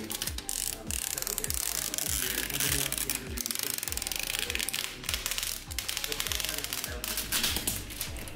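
Protective plastic film being peeled off the acrylic UV cover of a resin 3D printer, a dense crackling. It plays over background music with a steady beat.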